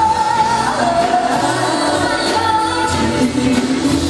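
Live R&B band performance: a male singer holds long notes that slide between pitches over electric guitar, keyboards and a steady drum beat with cymbals.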